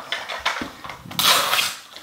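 Crinkly plastic wrappers rustling as a pink Toy Mini Brands capsule is handled and its wrapped contents are pulled out. Light handling noises give way to one louder, longer crinkle a little past halfway.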